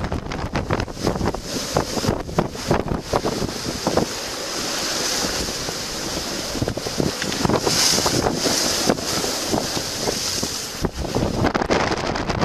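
Storm wind buffeting the microphone in loud, uneven gusts over the rushing of heavy surf.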